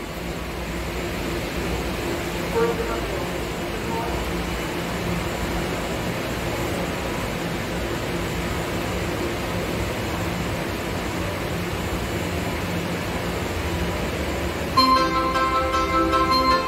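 Subway platform ambience with a steady low hum from the stopped train. About fifteen seconds in, the Marunouchi Line platform's departure melody (hassha melody) starts playing as a bright chime tune.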